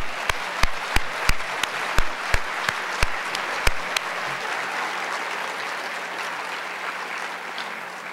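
Audience applauding. For the first four seconds one pair of hands right at the podium microphone claps loud and sharp, about three claps a second, over the crowd's clapping; the applause then thins out and fades near the end.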